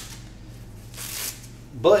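Velcro strap and soft fabric of a knee brace being handled on the knee, with a brief rasping, papery sound about a second in.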